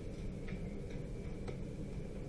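A few faint, sharp ticks, irregularly spaced about half a second to a second apart, over a steady low hum and a faint high whine.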